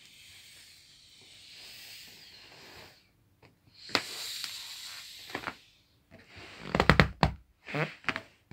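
Air hissing out of a vinyl inflatable air mattress as it is pressed down to deflate it, softly at first and then more strongly for a couple of seconds. Near the end come several loud crackles and knocks of the vinyl being pushed and handled.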